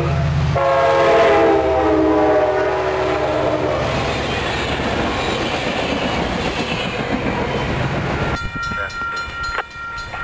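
Amtrak California passenger train led by an F59PHI diesel locomotive passing close by at speed, its horn chord dropping in pitch as the locomotive goes past and stopping a few seconds in. The rush and clatter of the passenger cars follows, then the sound cuts off abruptly to a much quieter scene near the end.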